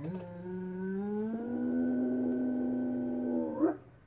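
A dog howling: one long, pitched howl that rises slightly at first, holds steady for about three seconds and breaks upward just before it stops. It is the dog's distress at being separated from its owner.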